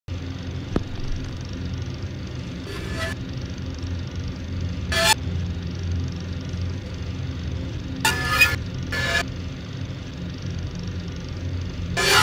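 Intro soundtrack: a steady low hum with brief bursts of noise every two to three seconds and a single sharp click about a second in.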